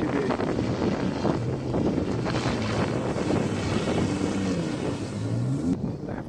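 Jet ski engine running out on the water, its pitch rising and falling as the rider manoeuvres, with wind buffeting the microphone.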